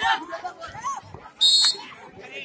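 A referee's whistle blown once in a short, shrill blast about one and a half seconds in, during a handball match, over a man's voice calling the score and crowd chatter.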